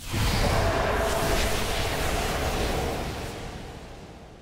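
Cinematic transition sound effect: a sudden deep boom with a rushing, noisy tail that holds for about three seconds and then slowly fades out.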